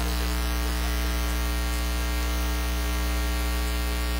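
Steady electrical mains hum and buzz from an amplified sound system: a strong low hum with a stack of even overtones that never changes.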